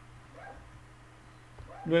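Faint steady electrical hum with a brief, faint high-pitched sound about half a second in. A man's voice starts near the end.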